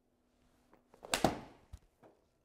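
Full swing of an iron golf club hitting a ball: a short rising swish of the club, then a sharp crack as the clubface strikes the ball a little over a second in. A second, shorter knock follows about half a second later.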